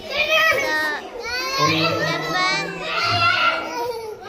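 A young girl's voice, close to the microphone, speaking in short phrases throughout.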